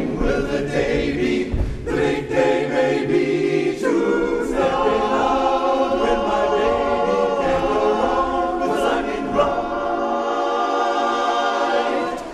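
Male barbershop chorus singing a cappella in close four-part harmony, settling into a long held chord from about halfway through.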